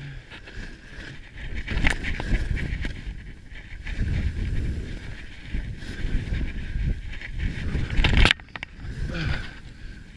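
Skis scraping across firm snow on a steep descent, swelling in surges about every two seconds, with wind on the microphone. A louder scrape about eight seconds in cuts off suddenly.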